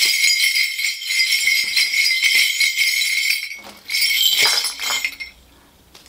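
Korean shaman's ritual brass bell rattle (mugu bangul) shaken hard, a loud dense jingling for about three and a half seconds, then a shorter burst about four seconds in before it stops.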